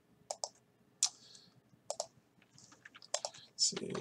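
Clicks from a computer mouse and keyboard: a handful of separate sharp clicks in the first two seconds, then several lighter ones, irregularly spaced.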